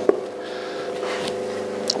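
Electric pottery wheel motor running with a steady hum of several fixed tones, with a light knock just at the start.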